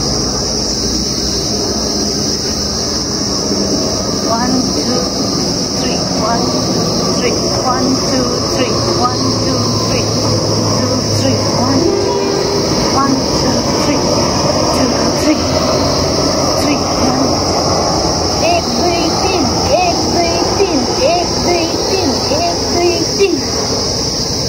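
Steady, high-pitched droning of insects in the trees, with many short chirps and calls underneath.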